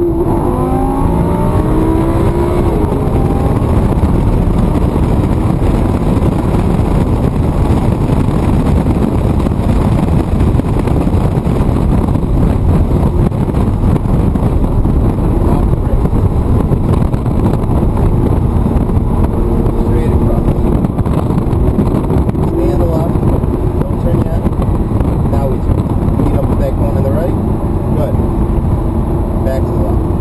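Lamborghini Gallardo engine pulling hard on a race track, heard from inside the cabin over loud, steady road and wind noise, its pitch rising in the first couple of seconds as it accelerates.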